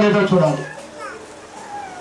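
A man speaking into a handheld microphone, his drawn-out phrase trailing off about a second in, followed by a brief pause.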